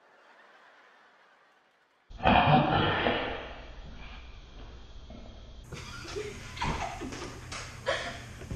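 Laughter breaking out suddenly about two seconds in, loud at first and fading over the next few seconds, after a faint, nearly quiet start.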